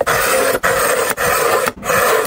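Steel kitchen knife blade drawn repeatedly through a ProEdge pull-through sharpener, giving about four rasping strokes of roughly half a second each with short breaks between.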